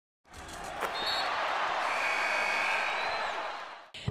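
Basketball game sound: a steady wash of arena crowd noise that fades in and back out, with a sharp knock, like a ball bounce, about a second in and a few short high squeaks.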